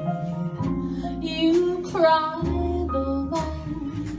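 Live small jazz combo playing: upright bass notes walking under piano chords, a gliding melody line over them, and a few cymbal strikes.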